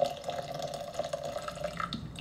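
Water pouring steadily into a container, with a light ringing tone over the splash; it stops near the end.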